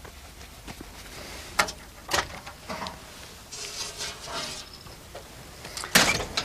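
Handling noise as a heat-damaged quartz watch is taken out of a low oven: a few light clicks and knocks, then a short rustle a little past halfway.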